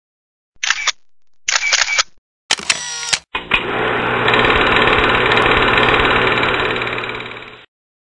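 Intro-logo sound effects: two short camera-shutter clicks and a brief third burst, then a long, loud glitchy static noise that fades away near the end.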